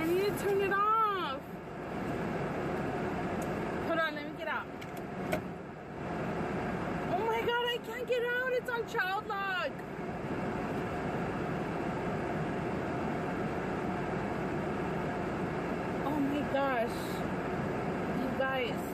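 A woman's wordless vocal sounds, a few short rising-and-falling calls in bursts, over a steady hum inside a car.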